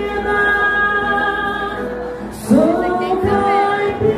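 A woman singing a música caipira ballad over two acoustic guitars. She holds a long note, then starts a new, louder phrase with an upward swoop about two and a half seconds in.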